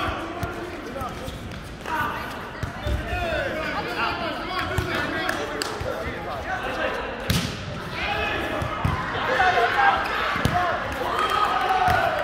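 Overlapping voices of volleyball players calling and talking during a rally in a large hall, with the sharp slap of a volleyball being struck about seven seconds in and a few duller ball thuds.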